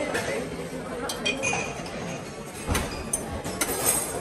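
Clinks of crockery and metal serving tongs against ceramic buffet trays, over a steady background of diners' chatter; a handful of sharp, ringing clinks come about a second in and again near the end.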